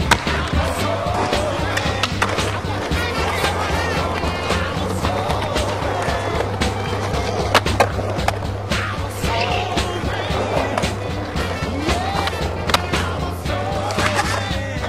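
Skateboard wheels rolling on stone paving with sharp clacks of the board, two in quick succession about halfway through and another near the end, under a music soundtrack with a steady bass beat.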